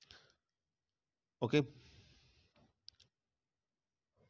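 A man's voice says a single "okay", trailing off in breathy hiss, followed about a second later by two sharp short clicks in quick succession. Otherwise near silence.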